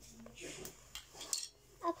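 Small plastic LEGO pieces clicking and clattering as they are handled and picked out of a pile, a few sharp clicks around the middle.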